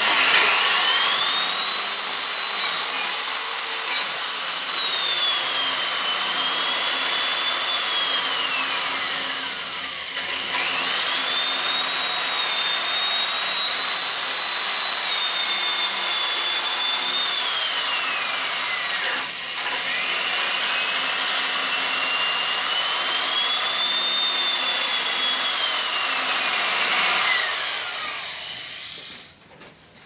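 An electric drill boring a spade bit through hard oak at an angle. Its motor whine rises and sags as the bit cuts. It drops away and starts again twice, then winds down near the end.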